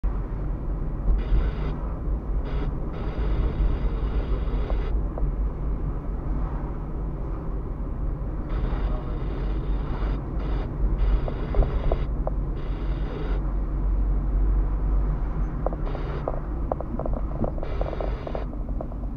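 Car interior and road noise heard through a dashcam microphone while driving slowly on a rough village road: a steady low rumble, with short stretches of higher-pitched noise coming and going and a few light clicks near the end.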